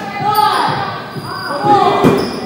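Players' voices calling out across a large, echoing sports hall, with a dodgeball striking the wooden floor near the end.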